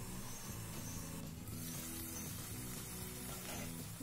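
Soft background music with low sustained notes that shift every second or so.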